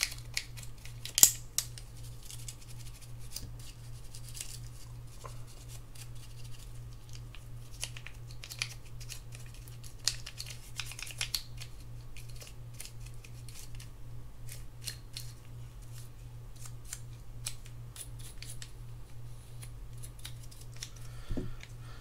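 Toothbrush bristles scrubbing a fishing reel's handle and shaft to clean out old grease: irregular, quick scratchy strokes, with a sharper click about a second in.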